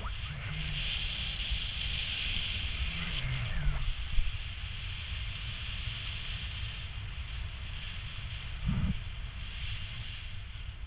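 Wind rushing past a paraglider's camera microphone in flight: a low buffeting rumble under a steady hiss of air. A brief sharp knock about four seconds in and a short low thump near the end.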